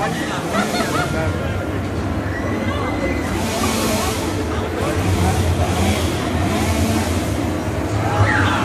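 Crowd of people chattering while walking along, over a steady low hum. In the second half a hissing sound swells and fades several times.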